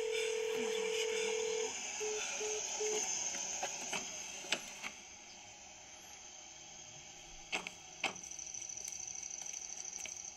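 Telephone call tone: one long beep of about two seconds, then three short beeps at the same pitch, the signal of a call that did not connect. A few faint clicks follow later.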